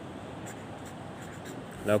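Marker pen writing a number on paper: faint, short scratching strokes over a steady background hiss.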